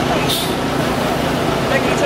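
Engine of a chiva, a Colombian open-sided rural bus, running steadily amid the chatter of a crowd, with a brief hiss shortly after the start.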